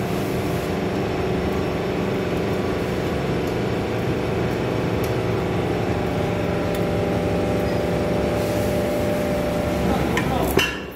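Hydraulic power unit of a double-action scrap baling press running, a steady motor-and-pump drone with a constant hum.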